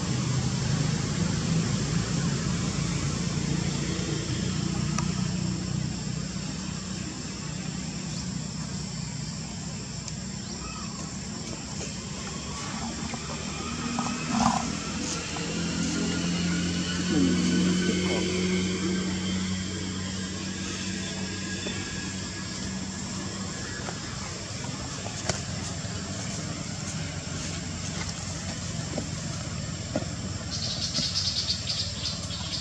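A steady low motor hum, like a vehicle engine running nearby, swelling louder for a few seconds around the middle.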